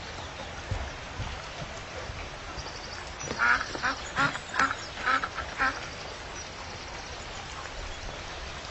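A bird calling in a quick run of about seven short calls, roughly three a second, starting about three seconds in, over a faint steady background.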